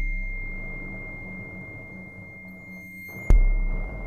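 Free improvisation on a prepared snare drum with crotales and electronics: a steady high ringing tone sits over a low drone and a rough, noisy texture. A sudden loud hit with a deep boom lands a little over three seconds in.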